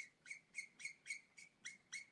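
Alcohol-based marker's brush nib squeaking and rubbing on marker paper in short back-and-forth colouring strokes, about four a second, faint.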